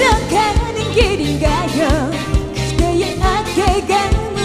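Female voice singing a trot song live with strong vibrato over a pop backing track with a steady drum beat.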